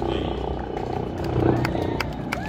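Line-dance performance: a country song playing over the stage speakers, with sharp stomps and claps from the dancers' feet and hands on the wooden stage. A shout rises from the dancers near the end.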